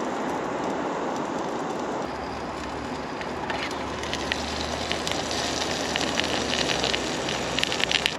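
Odoland gas camping stove burner hissing steadily on a low flame under a pot. From about three and a half seconds in, as the lid comes off, the batter and sausages in hot oil crackle and spit.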